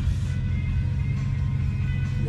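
A Lamborghini's engine idling steadily, heard from inside the cabin, with music playing from the car radio.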